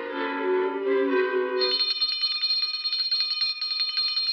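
Orchestral cartoon score, then about one and a half seconds in a small handbell starts ringing rapidly and keeps ringing.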